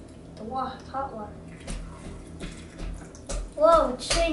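Water sloshing and splashing in a plastic toy car-wash playset, with a few light plastic clicks. A child's voice is heard briefly about half a second in and again, louder, near the end.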